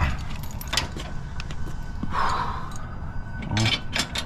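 Light metallic clinks and knocks, with a steady low rumble underneath.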